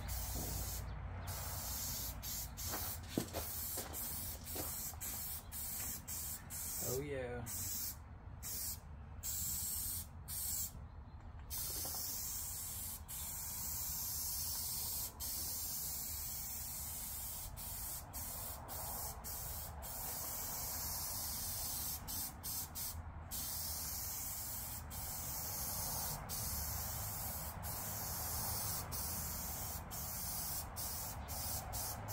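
Rust-Oleum aerosol spray can hissing as paint is sprayed in long, overlapping passes. The spraying stops briefly several times, mostly in the first dozen seconds.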